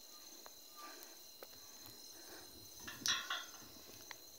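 Crickets or other night insects trilling steadily at a high pitch. There are a few faint clicks, and a brief louder sound about three seconds in.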